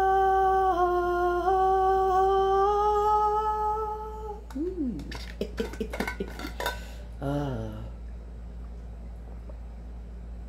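A woman's voice sings one long held note, stepping slightly up and down in pitch, for about four seconds. After that come a short falling vocal glide and a string of light clicks and clinks.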